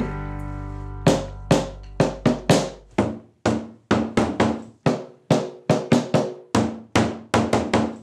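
Drumsticks striking a snare drum on an acoustic drum kit, starting about a second in: short patterns played in turn and repeated, roughly two strokes a second, each with a brief ring.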